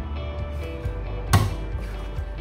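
Quiet background music, with one sharp knock of a kitchen knife coming down on a wooden cutting board a little past the middle as fish is sliced.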